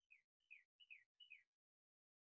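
Faint bird song: a series of four quick whistled notes, each sliding down in pitch, about three a second.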